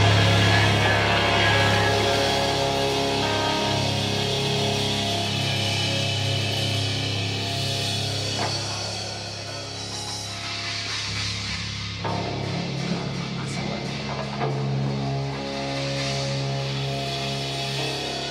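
Live rock band playing electric guitar, bass and drums, with long held notes. It grows quieter over the first ten seconds or so, then holds steady.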